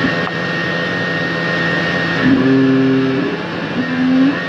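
Dense noise-music drone: a steady high tone over a low hum and a wash of noise, with a lower pitched note and its overtones sounding for about a second, starting a little past two seconds in.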